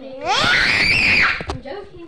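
A child screaming once: a high shriek that rises sharply in pitch, holds for about a second and falls away.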